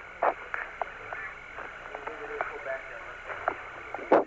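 Hiss of the Apollo air-to-ground radio channel between transmissions, with scattered short clicks and a couple of faint, brief voice fragments.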